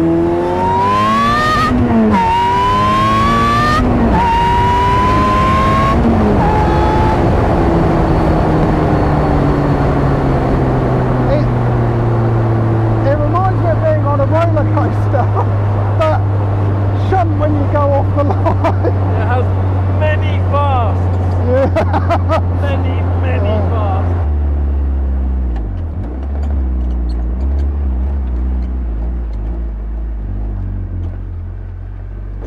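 The Ariel Atom 3.5's supercharged 2.0-litre Honda K20 four-cylinder accelerating hard. Its pitch climbs steeply and drops at each upshift, about every two seconds, for three pulls. It then settles to a steady cruise, and near the end runs lower and slower.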